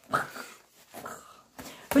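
A woman's short wordless vocal sounds through clenched teeth, in mock exasperation at the table being jostled: one right at the start and a fainter one about a second in.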